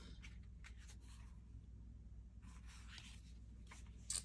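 Faint rustling and light ticks of cardstock greeting cards being handled and laid down on a table, in two short spells over a low room hum.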